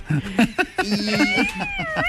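A person's voice: a few short syllables, then about a second in a long, high-pitched wavering cry that glides up and down, much like a meow.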